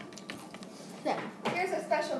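Speech: a voice says a short "yeah" about a second in, after a quieter second with a few faint clicks.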